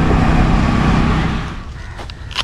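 Riding noise of a motor scooter on the move: wind rushing over the microphone over a low engine hum. It drops off suddenly about one and a half seconds in to much quieter surroundings.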